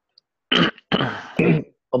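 A man clearing his throat in two rough bursts, starting about half a second in.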